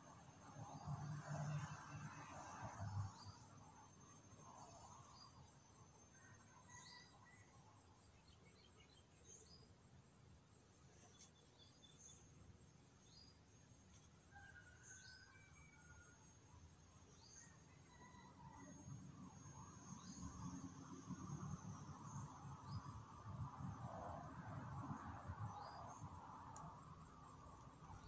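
Faint ambience: a steady high insect trill with scattered short chirps. Soft scratching of a fine-tip pen on notebook paper rises near the start and again through the last several seconds.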